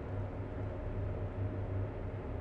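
Quiet room tone: faint, even background noise with a steady low hum, and no distinct event.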